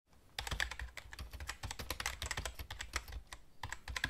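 Computer keyboard being typed on: a quick, uneven run of key clicks that starts about half a second in, with a brief pause shortly before the end.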